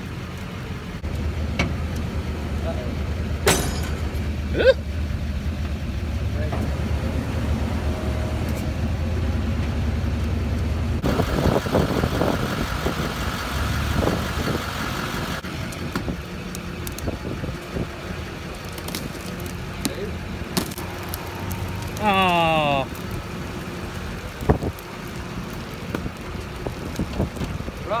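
Tow truck's winches and engine running under load with a steady low rumble as they drag and roll a wrecked pickup in a ditch, with a few sharp crunching knocks from the pickup's body and glass. A falling squeal comes a few seconds before the end.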